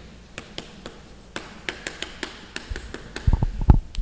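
Chalk clicking and tapping on a chalkboard as a word is written: a string of short, sharp clicks. A few low thumps near the end are the loudest sounds.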